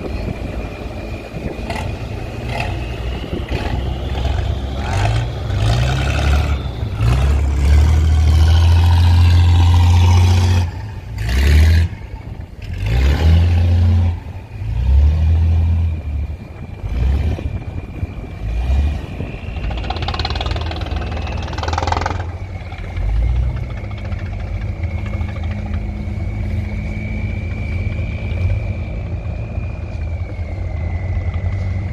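Diesel engines of wooden fishing boats running as they motor through the harbour: a steady low engine hum with a high whine over it. Through the middle stretch, loud irregular gusts of wind buffet the microphone.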